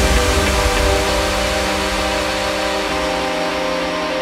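Instrumental electronic dance music: held synth chords over a wash of synth noise and heavy bass, with the chord shifting about three seconds in and the bass thinning out.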